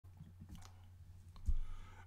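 Quiet room tone with a steady low electrical hum, a few faint clicks, and a louder short click-like noise about one and a half seconds in.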